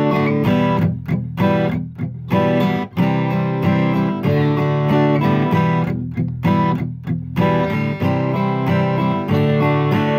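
Steel-string acoustic guitar strumming a rhythmic pattern: an E minor chord broken by percussive strums where the heel of the picking hand thuds on and mutes the strings, followed by C and D chords strummed down, up, down, up. The ringing cuts off briefly several times where the muted strums fall.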